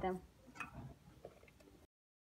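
Faint light taps and clicks of hands working on a floured kitchen tabletop. A little before the end the sound cuts off to dead silence.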